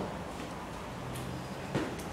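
Quiet room noise with a low steady hum, a faint click about a second in and a small dull thump shortly before the end.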